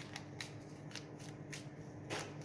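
A deck of oracle cards being shuffled by hand, passed from one hand into the other: a handful of short, quick card flicks at irregular intervals.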